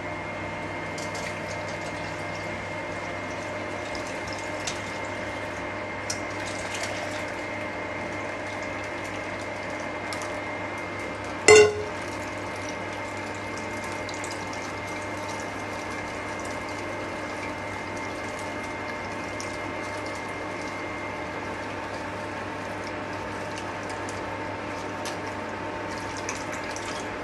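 Steady electrical hum of an induction cooktop that is switched on, with faint wet squishing of grated coconut being squeezed by hand in a steel mesh strainer. A single sharp metal clink, the strainer knocking the steel plate, about eleven and a half seconds in.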